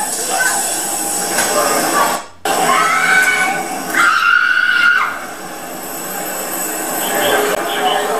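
Raised voices in a struggle, with a long, high, held cry about four seconds in that lasts about a second. The sound drops out briefly just past two seconds.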